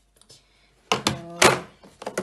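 Plastic cosmetic jars and bottles knocking against each other and the drawer as they are set down and moved. There are two thunks about half a second apart, and the second is louder.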